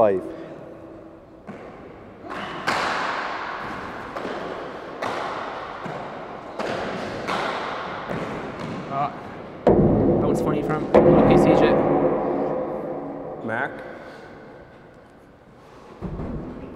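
Hardball handball being struck by hand and smacking off the concrete walls of an indoor court, each hit ringing out in the hall's long echo. About ten seconds in, when the rally ends, a louder spell of crowd noise rises and fades away.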